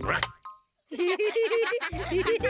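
Cartoon sound effects: a springy boing near the start, then a moment of silence, then bouncy, plucky background music.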